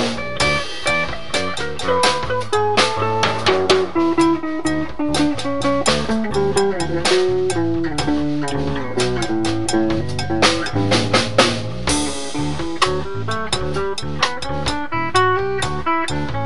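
A drum kit and a guitar playing together. A melodic single-note guitar line moves over busy drumming on snare and cymbals.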